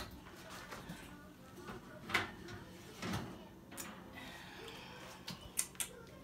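Oven door and a metal baking pan with a wire rack being handled with oven mitts: a few separate knocks and clacks, with several quick ones near the end as the pan is lifted out of the oven.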